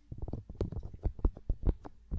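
Fingertips touching and rubbing the ears of a binaural ASMR microphone, heard as a dense run of muffled, irregular taps and rustles, with a few sharper, louder taps near the end.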